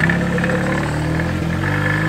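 Small engine of a 45 km/h microcar running as the car drives along, its pitch stepping up about a second and a half in, with a faint steady high whine over it.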